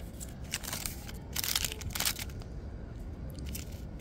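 A paper sign and a plastic packet of water balloons being handled, rustling and crinkling in several short crackles, the loudest about one and a half seconds in.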